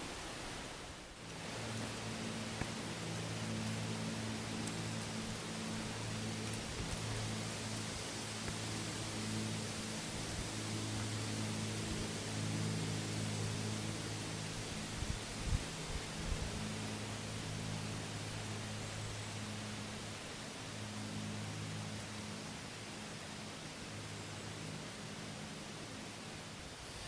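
Steady hiss of wind through the bare hardwood trees, with a faint steady low hum underneath and a few low knocks about fifteen seconds in.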